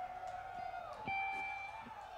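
Live reggae band holding soft sustained notes as a song ends, with a few steady high tones sounding about halfway through.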